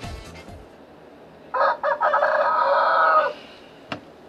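A rooster crowing once, a single call of a little under two seconds starting about a second and a half in. The tail of background music fades out at the start, and there is a short click just before the end.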